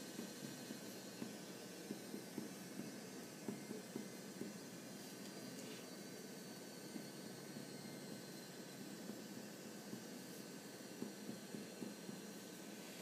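Parker Sonnet fountain pen's gold-plated steel nib writing quickly across paper without stopping: faint scratching with small, irregular ticks from the strokes, over a steady low hiss.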